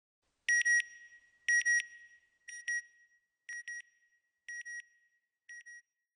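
Electronic double beeps on one high tone, a pair about once a second, six pairs in all, each fainter than the last: an outro sound effect.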